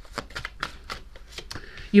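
A deck of tarot cards being shuffled by hand: a quick run of light card clicks lasting about a second and a half.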